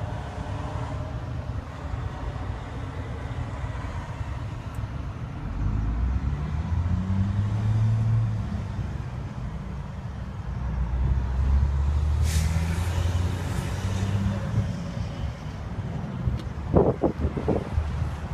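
Hino J08E diesel engine running, its revs raised twice, about six seconds in and again about eleven seconds in. A hiss starts about twelve seconds in, and a few sharp knocks come near the end.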